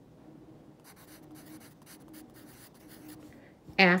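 A pencil writing a word on paper: a run of faint, short scratching strokes of graphite on the sheet.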